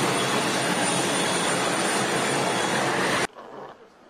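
Loud, steady roar of an Ilyushin Il-76MD military jet transport's engines running on the ground, with a thin high whine over it. It cuts off abruptly a little after three seconds in.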